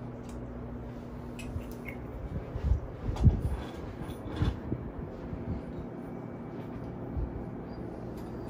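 Scattered dull knocks and rubbing from a metal microphone boom arm and its desk clamp being handled and fitted to a desk, the loudest knock about three seconds in.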